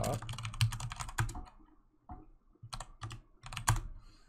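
Computer keyboard typing: a quick run of keystrokes in the first second, then a pause and a few scattered keystrokes in the second half.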